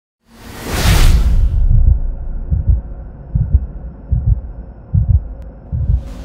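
Electronic logo sting: a swoosh about a third of a second in, then deep bass thumps over a low drone, about one every 0.8 seconds, like a heartbeat.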